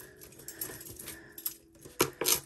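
Metal costume jewelry being handled: a few faint, scattered clicks and clinks as pieces are moved and set down, with a louder clink right at the end.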